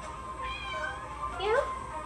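A house cat meowing twice: a short call about half a second in, then a louder, rising meow near the end.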